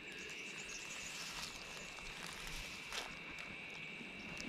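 Insects calling in a steady, unbroken high-pitched drone, with one faint click about three seconds in.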